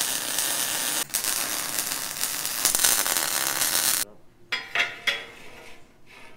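Miller MIG welder arc crackling steadily as a bead is laid on a steel frame rail, with a brief break about a second in. The arc cuts off about four seconds in, followed by a few light metallic clinks.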